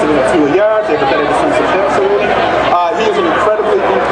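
Speech only: a man talking without a break.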